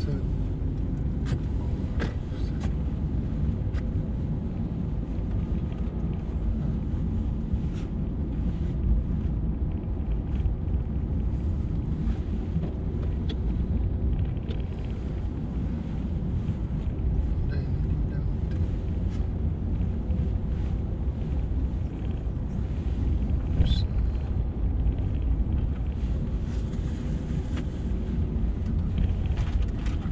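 Steady low rumble of tyre and engine noise from a Mercedes-Benz car driving on the road, heard inside the cabin.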